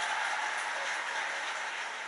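Studio audience clapping and cheering on a television game show, played through the TV's speaker in a room and slowly easing off.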